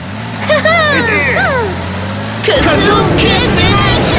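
Cartoon vehicle engine humming as the car speeds off, with wordless yelling voices over it; about two and a half seconds in, a louder rushing whoosh takes over, with more cries.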